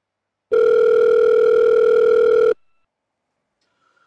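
Telephone call tone sound effect: one steady electronic tone, about two seconds long, that starts about half a second in and cuts off suddenly.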